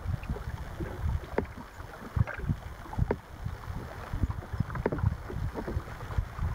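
Wind buffeting the microphone and small waves slapping against a bass boat's hull, an uneven low rumble broken by scattered sharp knocks.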